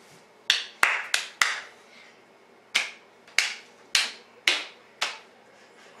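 A child clapping his hands: four quick claps near the start, then after a short pause five more at an even pace, about one every half second or so.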